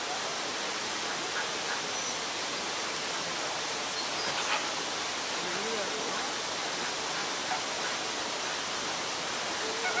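A steady rush of running water throughout, with a few faint honking calls of American flamingos over it now and then.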